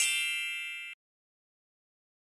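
A bright metallic chime sound effect, struck once, ringing with several high tones and fading, then cut off suddenly about a second in.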